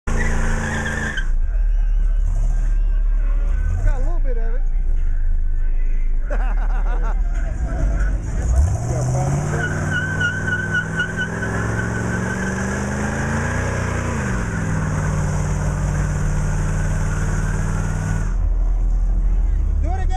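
An old car's engine revving hard as its rear tires spin in a burnout, with tire squeal. Near the middle the engine climbs in pitch for several seconds, then eases off, and the squealing cuts off a couple of seconds before the end.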